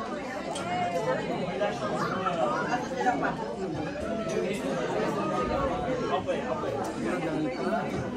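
Indistinct chatter of several people talking at once in a large hall, with no music playing.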